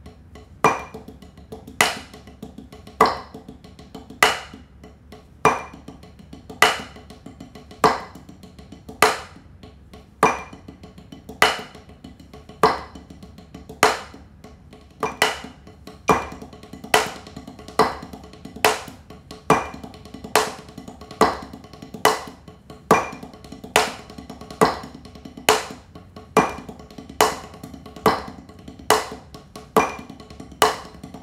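Drumsticks playing a fast paradiddle-diddle-diddle sticking on a rubber practice pad against a loud metronome click on each beat. The click comes at 50 beats a minute, then speeds up to 70 a little past halfway.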